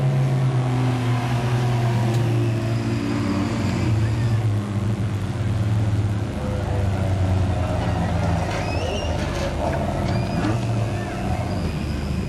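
Several production sedan race cars' engines running around a dirt speedway track, a steady overlapping engine drone without sharp revving.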